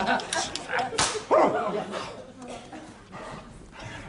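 A person's wordless, howl-like vocal cry sliding down in pitch about a second in, among short scattered studio sounds.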